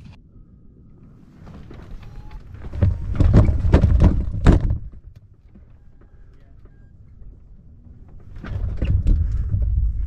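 Wind gusting across the microphone in two waves, one about three seconds in that drops off suddenly near the middle, the other building near the end, with a few knocks.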